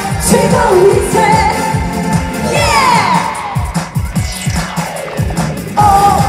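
A woman singing an upbeat Korean pop song live into a handheld microphone over an amplified backing track with a steady drum beat, with a falling swoop in the music about halfway through.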